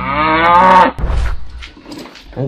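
A cow moos once, a single drawn-out call just under a second long that cuts off abruptly. A brief low thump follows.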